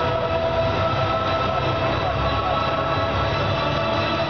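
Music from an arena sound system, with long held, horn-like chords over a pulsing low end.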